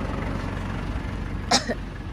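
Ford Everest's 2.5-litre diesel engine idling steadily. A short human vocal burst comes about a second and a half in.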